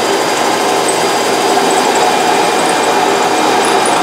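Homemade drum thickness sander running steadily, a guitar neck's headstock pushed in under the drum to sand it down to thickness.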